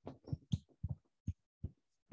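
A stylus knocking and tapping on a tablet or desk surface as the lecturer starts handwriting on a digital whiteboard: about eight short, irregular dull thuds, some with a sharper click on top.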